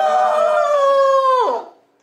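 Loud, high-pitched 'ooooh!' shout of excitement at landing a kendama ball on its spike, held steady and then falling away about a second and a half in.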